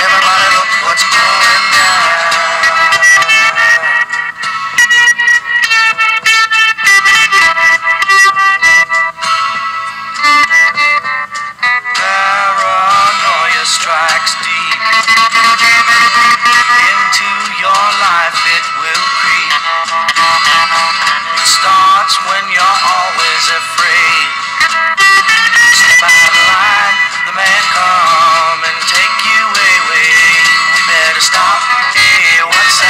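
A recorded song playing: a singer's voice over instrumental backing.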